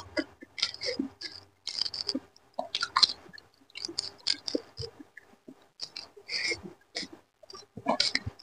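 Close-up wet chewing and lip smacking over a mouthful of rice and curry, as a run of irregular sharp, crackly mouth clicks. Fingers squish and mix soft rice on a steel plate.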